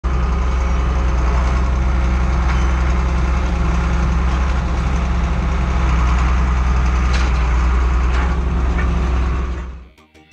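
Large engine running steadily with a deep drone, fading out near the end.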